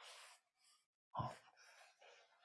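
A man's faint breathing in a pause in his talk: a soft intake of breath, then a short breathy sigh about a second in.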